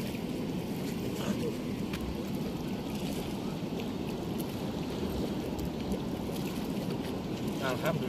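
Steady low rush of water flowing through the gates of a river weir.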